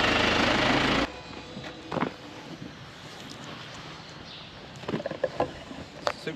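Telehandler's diesel engine idling steadily, stopping abruptly about a second in; after that only a few faint knocks and short handling sounds.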